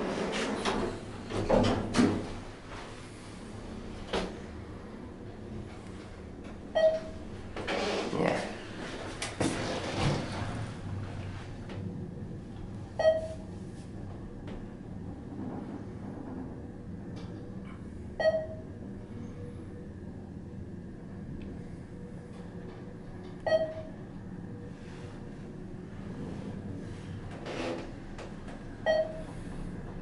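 ThyssenKrupp hydraulic elevator: the car doors shut with a few thumps and knocks, then the car travels with a faint steady hum and a thin high tone. A short electronic beep sounds about every five seconds during the ride.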